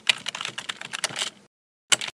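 Computer keyboard typing sound effect: a quick run of key clicks that stops about a second and a half in, then a single further click near the end.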